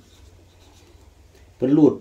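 Blue marker pen writing on lined notebook paper: faint short strokes, with a man's voice starting near the end.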